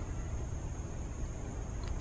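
Steady background noise, a low rumble with a light hiss, with one faint tick near the end. No distinct event.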